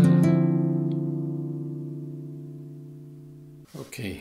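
A chord strummed once on a nylon-string classical guitar and left to ring, fading slowly for about three and a half seconds before the sound cuts off suddenly.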